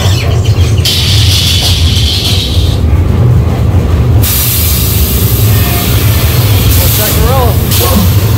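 Dark-ride train in motion with a steady low rumble, broken by loud bursts of hissing from the ride's special effects: one from about a second in, and a longer, brighter one from about four seconds in.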